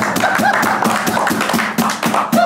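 A group of men clapping their hands, quick claps several times a second, with voices singing and laughing over them.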